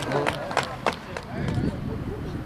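Voices of players and spectators calling out at an outdoor football match, with one short sharp knock a little before the middle.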